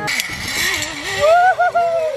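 A rushing whir of a zip-line trolley running fast along its steel cable, followed about a second in by a person's long wavering whoop.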